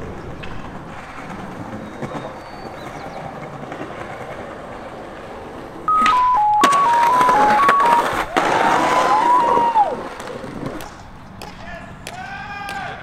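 Outdoor background noise, then at about six seconds a loud inserted editing sound effect: a quick run of short beeping tones jumping between pitches, then a swooping tone that rises and falls. It cuts off suddenly at about ten seconds, and the outdoor background noise returns.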